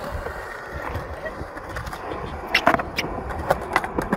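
Skateboard wheels rolling on concrete, with several sharp clacks of the board in the second half as a trick is tried.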